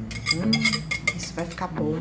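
Wire whisk clinking and scraping against a glass mixing bowl, a series of light clinks with short ringing tones, as the last of the egg mixture is scraped out.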